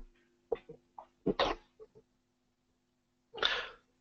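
A man making a few short throat and nose noises, like a stifled sneeze or cough, the strongest about a second and a half in, then a breath in just before he speaks again, over a faint steady electrical hum.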